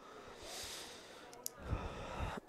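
Faint breathing of a commentator close to his microphone, with a small click about one and a half seconds in and a low swell near the end.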